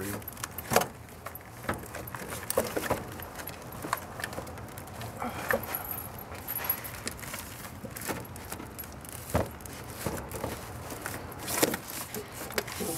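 A car battery being worked loose and lifted out of its tray: irregular knocks, clicks and scrapes of the plastic case and handle against the engine bay, with keys jangling.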